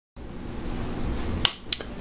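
Low steady room hum, then two sharp clicks about a quarter second apart near the end.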